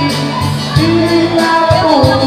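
Karaoke: a man singing into a microphone over a backing track with a steady bass beat.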